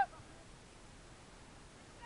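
A loud shouted call cuts off right at the start, leaving faint, even outdoor background noise with no distinct sound.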